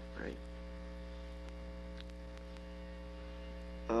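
Steady electrical mains hum: a low buzz with a ladder of steady overtones above it, holding at an even level throughout.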